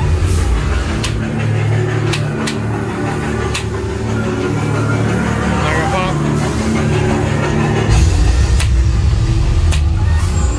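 Scary haunted-attraction soundtrack: ominous music over a deep rumble, with about seven sharp knocks or bangs scattered through it; the rumble swells near the end.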